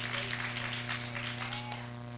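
Scattered applause from a congregation, thinning out and fading over the first second or so, over a steady electrical hum from the sound system.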